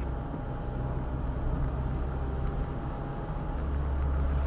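Steady low rumble of a roadster's engine and tyres on the road, heard from inside the car while it drives along.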